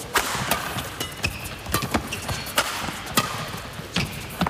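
Badminton doubles rally: racket strings hit the shuttlecock in a fast exchange of sharp cracks, about two a second, with short squeaks of shoes on the court floor over a steady murmur of the arena crowd.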